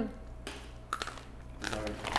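A person biting into and chewing a small hard snack, with faint crunching and a click about a second in; a voice comes in near the end.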